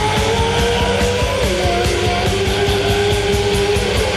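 Loud rock band playing: a driving drum beat under long held lead notes, one of which slides down in pitch about a second and a half in.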